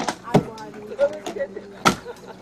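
Long metal pry bars striking and jabbing into a mass of wreckage in shallow water: sharp knocks, three in all, the loudest near the end, with talking voices behind.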